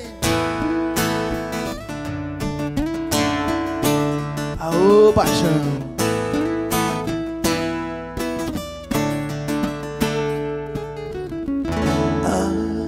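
Two acoustic guitars strumming and picking the instrumental ending of a sertanejo ballad, with a chord struck about twice a second and left ringing.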